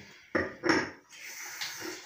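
A glass bottle knocking against a hard surface, two quick clunks about half a second in, followed by quieter handling.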